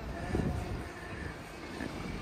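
Outdoor city street background noise: a fairly steady low rumble with faint distant voices.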